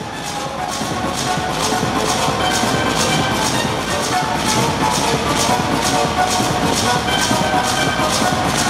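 Techno music fading in over the first second or so, with a sharp high beat about twice a second over held steady tones.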